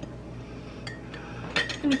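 Metal spoon clinking lightly against a ceramic mug, two faint clinks about a second in, as an egg is lowered on the spoon into the liquid dye and the spoon is left resting in the mug.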